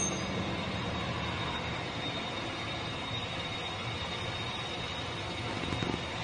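A steady low rumbling drone with a faint, thin high tone held over it, unchanging throughout.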